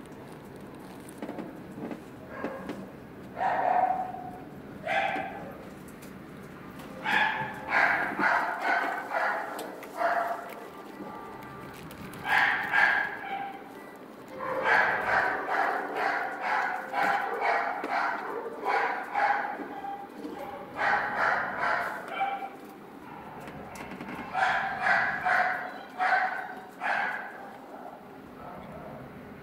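A dog barking in bouts of several quick barks, with short pauses between the bouts.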